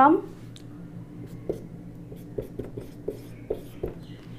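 Marker pen writing on a whiteboard: a run of short, separate strokes as figures are written, starting about a second and a half in.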